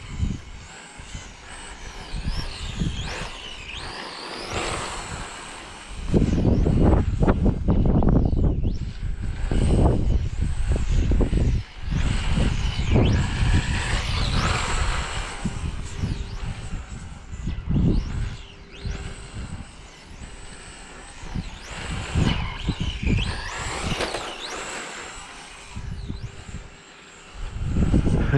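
Brushless electric motor of a Team Associated Hoonitruck RC car whining repeatedly, rising and falling in pitch as the throttle is opened and released during fast runs. Loud stretches of low rushing noise come and go underneath.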